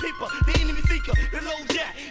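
Hip hop music: rapping over a drum beat with deep bass kicks and sharp snare hits, and a thin synth tone held through the first second or so.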